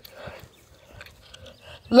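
Faint, distant voices over quiet outdoor background. Near the end, a loud voice calls out a drawn-out "Look".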